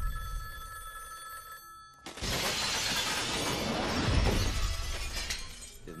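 A telephone rings. About two seconds in, a sudden loud crash cuts in and fades away over about three seconds.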